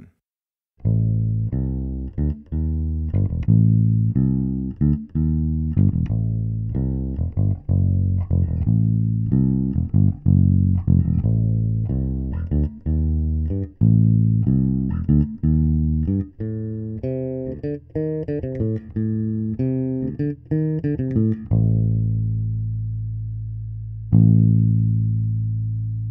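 Electric bass guitar line played back as a blend of a direct-input track and a microphone track from the bass cabinet, switched between the time-aligned blend and the original blend; aligned, it sounds fuller with more low end. A steady groove of plucked low notes moves up to higher notes about two-thirds of the way through, then ends on two long ringing low notes.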